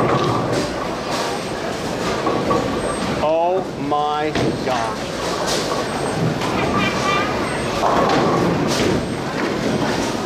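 Busy bowling alley din: balls rumbling down the lanes and pins clattering, with a few sharp knocks and people's voices.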